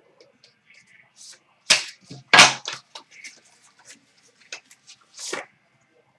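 A trading-card pack being opened and the cards slid out by hand: a few short rustles and scrapes of packaging and cards, the loudest about two and a half seconds in, with faint ticks of handling between them.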